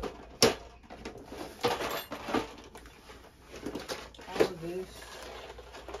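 Clatter and knocks of plastic storage drawer units and bagged stock being moved around by hand, a handful of sharp knocks with the loudest about half a second in.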